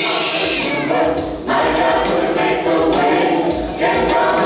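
Gospel choir singing live, many voices together, with short breaks in the sound about a second and a half in and just before the end.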